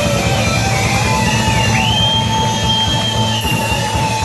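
Live electric guitar through an amplifier, holding long notes that slide up and down in pitch over a steady low bass rumble.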